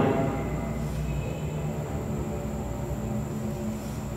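A steady low hum with faint background noise and a thin, faint high whine, with no distinct knocks or strokes.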